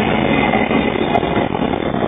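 Steady running noise of a moving vehicle, engine and road noise together, heard from on board.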